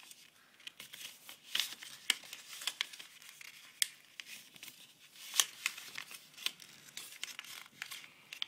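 A square sheet of paper being folded and creased by hand, the corners pressed flat into the middle: irregular crisp crackles and rustles.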